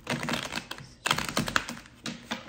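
A deck of tarot cards being shuffled: two quick flurries of rapid card clicks, each about a second long.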